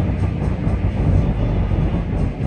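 Truck engine running steadily at road speed, heard inside the cab as a low rumble, with music from the cab radio playing along with it.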